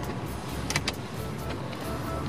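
Cabin noise of a Subaru Impreza on the move: a steady low road and engine rumble, with a brief clicking about a second in, under quiet background music.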